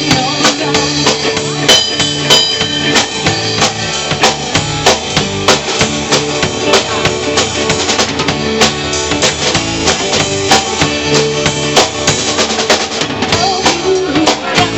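Live rock band playing, with the drum kit prominent: steady bass drum and snare hits driving the beat under electric guitars.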